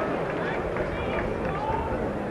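Indistinct voices of several people talking, with no clear words, over a steady background noise with a low rumble.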